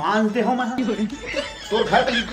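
Speech only: a man talking with chuckling laughter.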